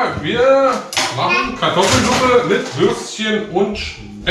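Kitchen clatter of dishes and cutlery, with a knife cutting on a wooden cutting board, under high-pitched voices that carry on almost throughout.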